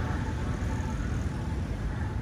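Outdoor street ambience: steady, low road-traffic noise.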